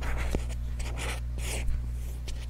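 Fingernails scratching over a small cardboard box held close to a microphone: a few short, crisp scratching strokes with a light tap or two. A steady low electrical hum runs underneath.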